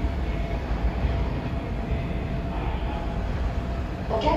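A Kintetsu electric train rolling slowly through station pointwork, a steady low rumble with a faint held tone above it.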